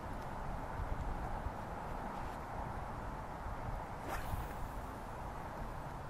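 Steady outdoor background noise with a low rumble, and a brief swish about four seconds in as a spinning rod casts a spoon lure.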